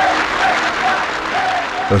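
A crowd applauding, a dense steady clatter of clapping with some voices in it.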